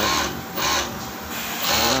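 Overlock sewing machine driven by a SUPU servo motor running in three short spells, each a brief whirr that speeds up and slows down. It is a test run after the motor's rotation-direction setting has been changed.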